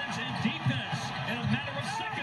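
Basketball game broadcast audio playing underneath: a commentator talking continuously, with a few faint sharp clicks.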